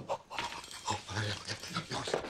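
A man's wordless vocal noises: short grunts, huffs and panting sounds with no words.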